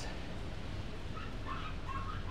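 Quiet city street background: a steady low rumble, with a few faint, short calls starting about a second in.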